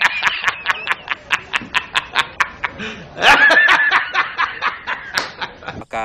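A man's loud, hysterical laughter: a rapid string of short 'ha's, about four or five a second, rising to a high squealing peak about three seconds in and tailing off near the end.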